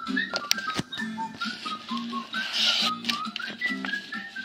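Game-show theme jingle: a melody of short stepping notes over a repeating bass line, with a short swish about two and a half seconds in, heard from a television's speaker.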